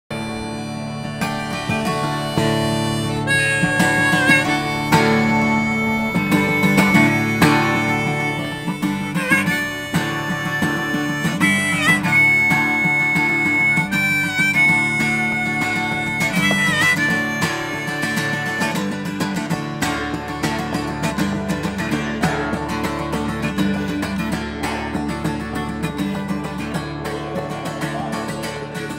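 Folk music: a harmonica plays long held notes with bends over a strummed acoustic guitar.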